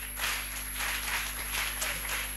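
An audience clapping together in a quick rhythm, roughly three to four claps a second, with a faint steady high whine from the sound system underneath.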